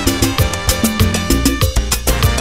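Classic salsa music playing from a recorded track, with a steady beat of percussion strikes over a moving bass line.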